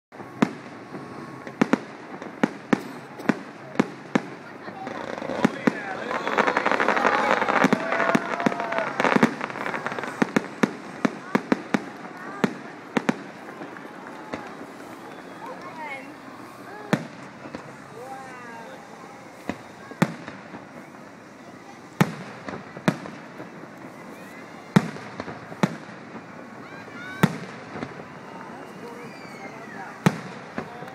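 Aerial fireworks shells bursting in a steady series of sharp bangs. There is a denser, louder run of bursts from about five to nine seconds in.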